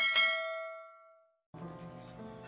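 A single bell chime sound effect, a notification 'ding' from the subscribe-button animation, struck once and ringing out over about a second. Background music comes in about a second and a half in.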